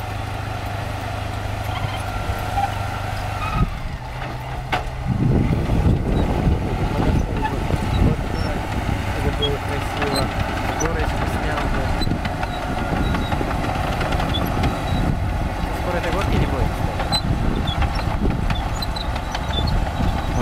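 Chetra T-20 crawler bulldozer's diesel engine running steadily, then from about five seconds in louder and rougher as the dozer pushes soil with its blade.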